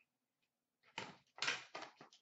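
Faint clacks of graded card cases being handled and set down, a short one about a second in and a couple more close together around a second and a half in.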